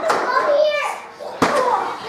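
Children's high-pitched voices calling out without clear words, with one sharp knock about one and a half seconds in.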